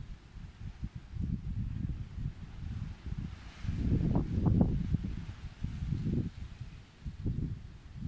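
Wind buffeting the phone's microphone in irregular low rumbling gusts, strongest about halfway through.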